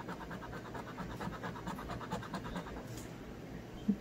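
A scratcher tool scraping the coating off a scratch-off lottery ticket in quick, even back-and-forth strokes, about eight a second.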